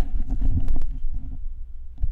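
Handling noise on a CAD Audio USB headset's boom microphone as the headset is pulled off the head: irregular low thumps, rubbing and clicks.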